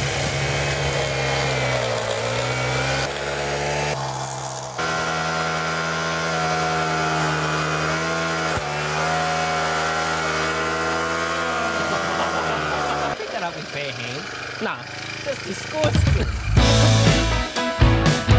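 Petrol lawn edger's small engine running steadily, its pitch dipping slightly now and then as the blade cuts along the path edge. The engine sound drops away after about 13 seconds, and music comes in near the end.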